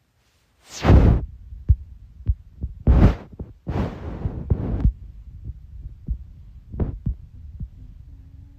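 Handling noise on a phone's microphone: bumps and rustling as the phone is moved about close to the body, with loud thumps about a second in and near three seconds, and a longer rustle from about four to five seconds.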